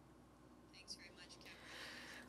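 Near silence between speakers, with a faint breathy sound close to the microphone building in the second half.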